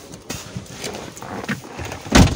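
A few light, irregular knocks and clicks as a person climbs into a car and handles it.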